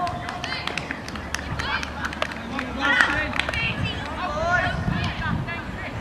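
Voices of players and onlookers talking and calling across an open cricket field, too far off to make out words, with a few scattered sharp claps in the first couple of seconds.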